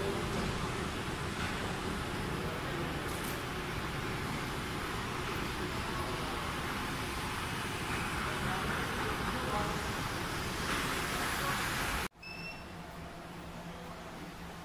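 Steady background noise of a large airport terminal hall: an even hiss with faint distant voices. About twelve seconds in it cuts off abruptly, replaced by a quieter restroom with a low steady hum.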